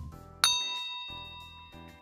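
A single bright ding, a chime sound effect, strikes about half a second in and rings out, fading over about a second and a half, over soft background music.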